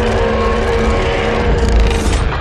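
Grimlock, the robot Tyrannosaurus, roaring with open jaws: a long, loud, mechanical-sounding film creature roar with a steady pitched tone through it over a deep rumble.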